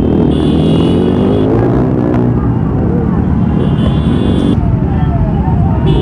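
Many motorcycle engines running and revving at low speed in a dense group ride. Among them is a Royal Enfield Classic 350's single-cylinder engine close by. Through this come bursts of high steady tones and people's voices.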